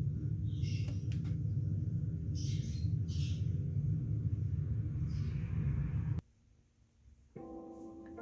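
A steady low hum with short, high chirping sounds every second or two, which cuts off suddenly about six seconds in. After about a second of near silence, a ringing, plucked-string chord of music starts near the end.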